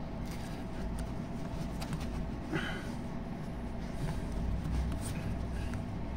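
Plush toy figures being moved by hand in a toy wrestling ring: faint rustles and small knocks over a steady low hum.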